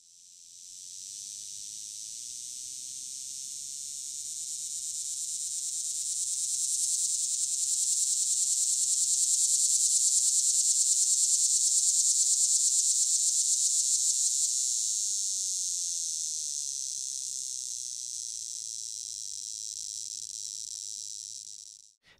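Male Linne's cicada (Neotibicen linnei) singing one long, high buzzing song. It swells to a wavering crescendo in the middle and then slowly fades, a sound likened to a salt shaker.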